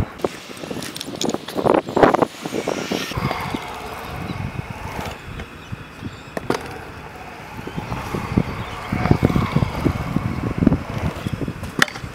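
Stunt scooter on a concrete skate bowl: wheels rolling with a rough rumble and the deck knocking on the coping, with a sharp knock about six and a half seconds in and another near the end.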